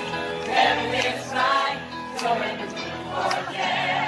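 A group of voices singing together with musical accompaniment, held notes throughout.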